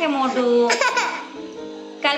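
A toddler crying in short, high wails that fall in pitch, dying away in the second half, with music playing underneath.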